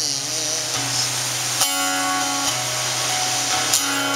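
Acoustic guitar strummed in a song interlude, with fresh chords struck about one and a half seconds in and again near the end, over a steady rushing noise.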